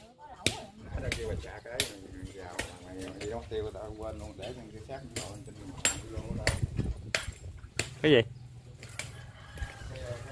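People talking in the background, with scattered sharp clicks and knocks throughout and a short, louder spoken question about eight seconds in.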